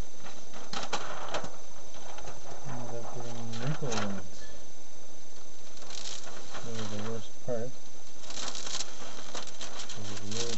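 Plastic window-tint film crackling and rustling as it is handled, in several short bursts. A low, wavering pitched sound cuts in twice, each time for about a second.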